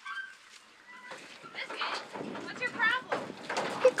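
A Jersey cow moving out of a livestock trailer, with scattered knocks and shuffling from her hooves and the trailer, and brief high-pitched voices in the background.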